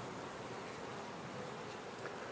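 Honey bees buzzing faintly and steadily around a small cluster on old comb.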